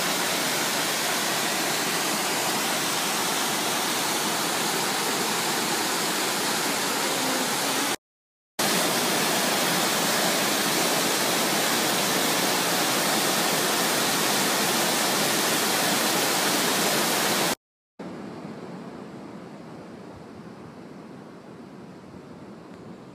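Cascading waterfall rushing over rock, a steady loud roar of white water. It cuts out completely twice, for about half a second at around 8 s and 17.5 s, and comes back quieter and duller for the last few seconds.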